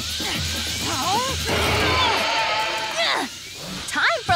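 Cartoon soundtrack of music and effects: a loud rushing noise with a few short voice-like cries, a held tone, then a quick falling whistle about three seconds in.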